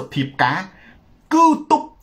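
Only speech: a man talking in Khmer.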